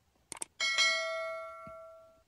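Subscribe-button animation sound effect: a quick double mouse click, then a single bell chime that rings and fades away over about a second and a half.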